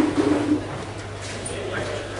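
A man's voice through the club PA, a short low sound with no words that stops about half a second in. A steady low hum and faint room noise follow.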